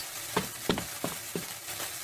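Cartoon bomb's lit fuse hissing steadily, with a few sharp crackles over the first second and a half.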